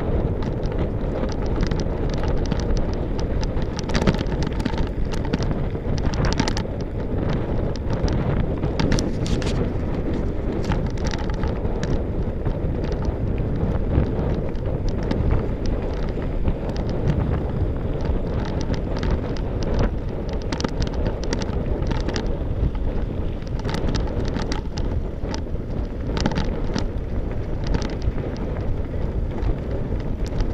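Mountain bike rolling over a gravel track, its tyres rumbling steadily, with wind buffeting the camera microphone and frequent short rattles and clicks from the bike over the stones.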